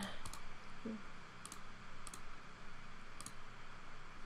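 Computer mouse clicking about four times, each click a quick pair of ticks, over faint room noise.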